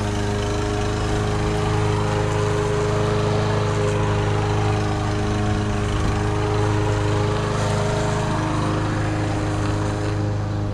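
Craftsman gas push mower engine running steadily while cutting grass: a constant-pitched engine hum that holds the same speed throughout.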